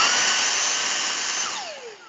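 Handheld cordless vacuum cleaner switched on, its motor whine rising quickly to a steady high pitch over a rush of air, then switched off about a second and a half in, the whine falling away as the motor winds down. Heard through video-call audio with noise suppression set to low.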